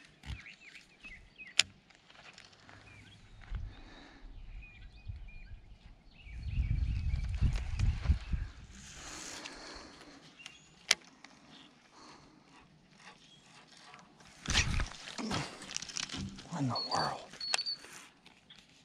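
Quiet outdoor pond-bank ambience with faint bird chirps. There is a low rumble of wind or handling on the microphone for a couple of seconds in the middle, and two sharp clicks, one early and one past the middle. Brief murmured voice sounds come near the end.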